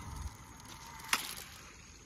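A heavy cast on a Penn Senator 12/0 conventional reel: a faint hiss as the spool pays out braided line, with one sharp click a little over a second in.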